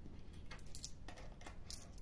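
Faint, irregular clicks of euro coins being picked up and stacked by hand, metal tapping on metal.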